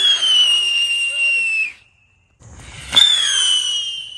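Whistling fireworks going off: a loud, shrill whistle that falls slightly in pitch for about a second and a half, then a sharp launch crack about three seconds in and a second whistle that slowly fades.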